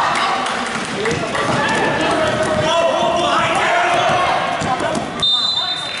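Overlapping voices of players and spectators echoing in a large gymnasium during a basketball game, with a basketball bouncing on the hardwood. A brief steady high-pitched tone sounds near the end.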